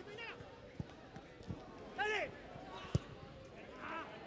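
Live pitch sound from a football match: short shouted calls from players and a few sharp thuds of the ball being kicked, the loudest thud about three seconds in.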